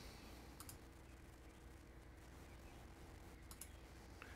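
Near silence: a faint steady room hum with a few soft computer mouse clicks, one pair about half a second in and another near the end.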